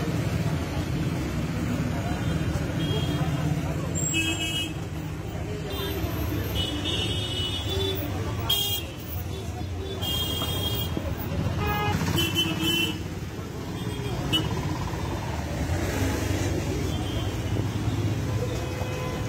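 Busy street ambience: a crowd of people talking over steady road traffic, with short car horn toots several times.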